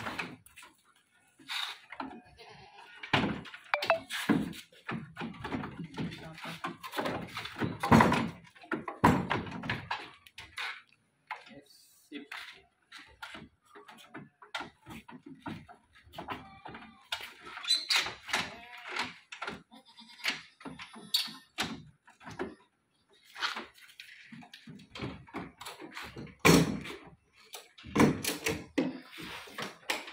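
Boer-cross goats bleating as they are loaded into a wooden slatted crate on a pickup bed, with repeated knocks and thuds of hooves and bodies against the wooden floor and slats.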